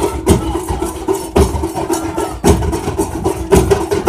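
Several large drums, barrel drums and big frame drums, beaten together in a fast, loud rhythm, with a heavier accented stroke about once a second.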